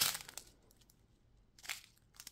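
Plastic zip bag of diamond-painting drills crinkling as it is handled: a few faint rustles at the start and one more shortly before the end.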